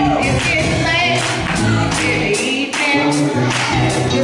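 Women's gospel vocal group singing into microphones, backed by a live band: steady low bass notes and an even beat of drum strokes under the voices.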